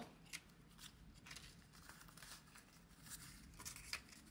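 Faint rustling of paper banknotes being handled and shuffled, with a few soft crinkles, a little louder near the end.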